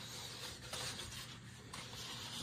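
Faint rustling and rubbing of things being handled, with a couple of light taps, one about a third of the way in and one near the end.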